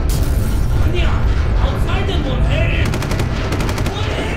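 Machine-gun fire over a steady low rumble: a short, rapid burst of about a dozen shots in under a second, near the end, after a voice is heard.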